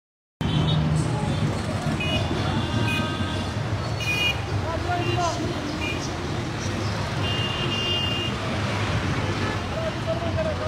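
Busy road traffic of auto-rickshaws and motorbikes: a steady low engine rumble with repeated short horn honks, one held longer near the end, and some voices in the mix. The sound cuts in abruptly just after the start.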